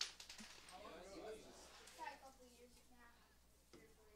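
A sharp click right at the start, then faint, distant voices talking.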